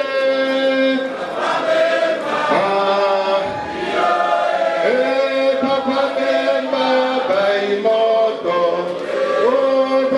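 A group of voices singing a chant-like song, with long held notes and sliding pitch between phrases.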